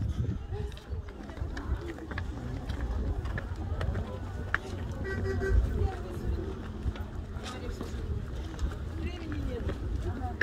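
Indistinct voices of several people talking nearby, over a steady low rumble.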